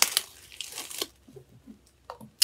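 Small clear plastic bag being pulled open and handled, the plastic crinkling: a loud rustle in the first second, then softer crinkles.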